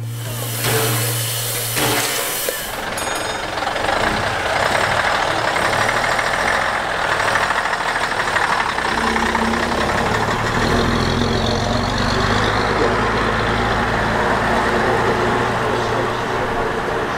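Diesel engine of a vintage Southdown Leyland Titan PD3 open-top double-decker bus running and pulling away, a steady low rumble. A loud hiss comes in the first two seconds or so.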